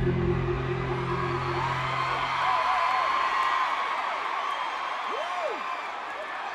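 Arena concert: a low sustained music drone fades out over the first two and a half seconds, leaving crowd noise with scattered high screams and whoops that rise and fall in pitch.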